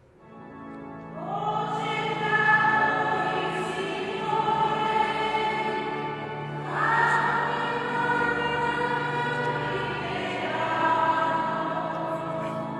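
A church choir singing a hymn to electronic organ accompaniment, starting about a second in with long held chords.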